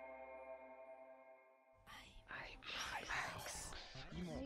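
A sustained ambient music chord fades away over the first second and a half. From about two seconds in, faint whispering voices follow in a rapid, breathy run.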